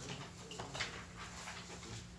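Sheets of paper rustling softly as pages are turned and shuffled, in several short scrapes over a low steady hum.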